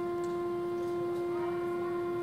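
A wind instrument in a concert band holds one long, steady note with no other parts sounding.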